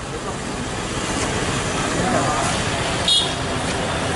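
Roadside street sound: steady traffic noise with people talking, and a short high-pitched tone about three seconds in.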